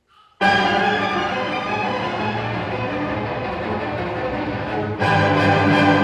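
Recorded orchestral music with bowed strings, the opening of the backing track, starts abruptly about half a second in and plays on with sustained chords. A fresh, louder chord comes in about five seconds in.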